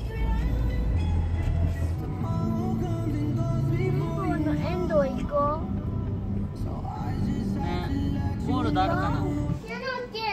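Background music with a steady bass, with high voices in bending pitches over it about halfway through and again near the end; the music cuts off just before the end.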